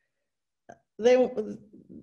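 A woman's voice saying one word after a short silence, with a faint click just before the word.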